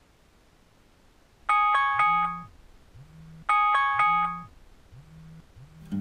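Mobile phone alarm ringtone: two bursts of quick, bright chiming notes about two seconds apart, the first about one and a half seconds in, with a low buzz repeating about once a second underneath.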